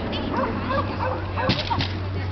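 Dogs barking and yipping, with one sharp bark about one and a half seconds in.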